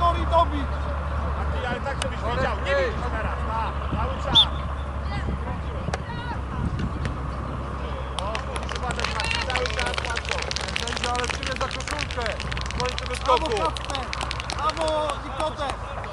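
Indistinct shouts and calls from children and adults across an outdoor youth football pitch, with no clear words. A dense patter of sharp clicks runs for about four seconds in the middle, and a low rumble drops away in the first two seconds.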